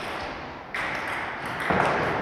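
Celluloid-type table tennis ball knocking off rubber-faced rackets and the table during a rally, two sharp clicks about a second apart.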